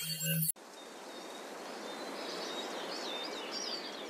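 A musical title sting ends abruptly about half a second in, leaving an outdoor ambience: a steady hiss with birds chirping, the chirps coming in over the second half.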